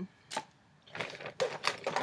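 Empty toiletry containers knocking and rustling in a bag as a hand rummages through it: one sharp click, then a quick, irregular run of clicks and rustles in the second half.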